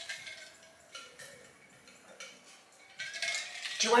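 Mostly quiet handling noise: a few faint small clicks about one and two seconds in, and a soft rustle near the end.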